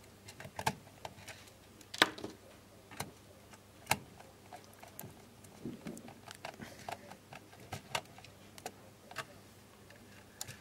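Scattered small clicks and taps from hand wiring work: a screwdriver and wire ends at the screw terminals of a motor braking unit and its contactors. The two sharpest clicks come about two and four seconds in.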